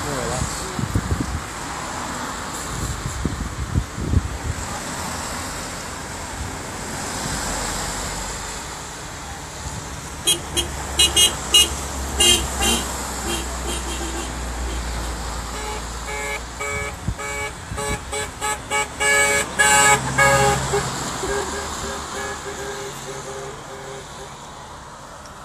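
Road traffic passing, with a run of short car-horn toots about ten seconds in and a longer string of toots and honks about sixteen to twenty-one seconds in.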